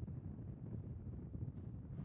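Faint, steady low rumble of outdoor launch-pad ambience, with wind on the microphone.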